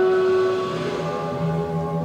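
Instrumental music with held chords that shift about a second in, after which a low pulsing note comes in.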